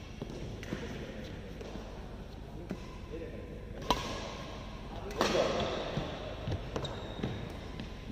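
Badminton racket hitting a shuttlecock in a rally: one sharp crack about four seconds in, the loudest sound, with a few lighter knocks and footfalls on the court floor around it.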